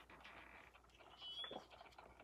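Near silence: room tone, with one faint, brief high squeak about a second and a half in.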